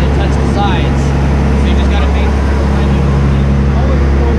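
Steady low drone of a sportfishing boat's engines running under way at sea, with an even hum that does not change.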